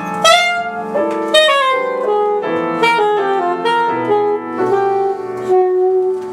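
Alto saxophone and piano playing jazz together: the saxophone runs through a line of short notes over struck piano chords, then holds one long steady note near the end.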